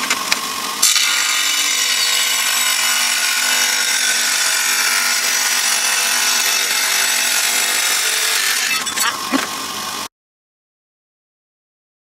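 Electric water-cooled tile saw cutting a ceramic tile. The motor runs, then a steady high grinding hiss starts about a second in as the diamond blade bites into the tile. The grinding eases back to the motor running free near the end, and the sound stops abruptly.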